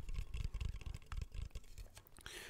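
Fingers tapping rapidly on a small handheld object held right at the microphone: a quick run of light clicks and taps.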